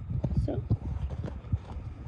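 Irregular soft knocks and rustling from a spiral-bound sketchbook being handled and turned to a new page.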